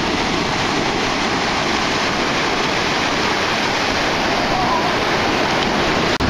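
Ocean surf breaking and washing up the beach, a steady, even rush of water.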